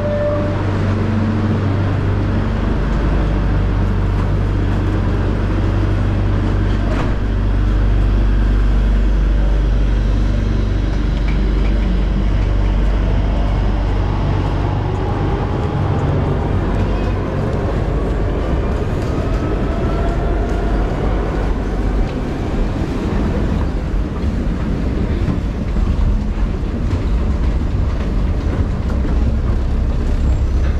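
Underground metro train rumbling at the platform and pulling away, with a whine that rises in pitch partway through as it speeds up.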